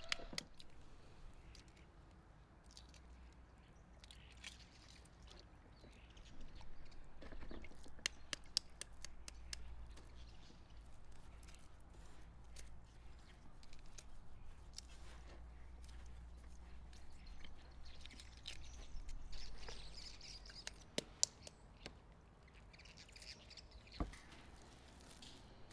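Hands rolling a meat-wrapped egg in breadcrumbs in a glass bowl: soft gritty rustling and scraping with scattered light clicks and taps against the glass, the sharpest a little after a third of the way in and near the end.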